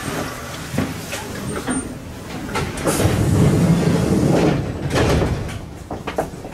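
Commuter electric train standing at a station platform, with platform bustle and scattered clicks. About three seconds in, a louder rush lasts around two seconds as the train's sliding doors work.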